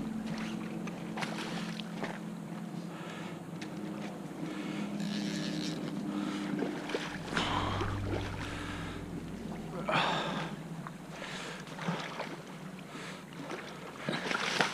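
Flowing creek water and wind on the microphone, with a few splashes from a hooked fish thrashing at the surface, the loudest about halfway through and again a couple of seconds later.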